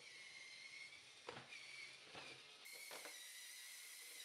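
Very quiet, faint high whine of a LEGO RC crawler's small electric motors driving it over the obstacles, with a few faint clicks and a low hiss.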